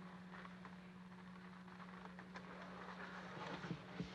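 Faint rustling and a few soft clicks of a seat harness being strapped and buckled, over a steady low hum.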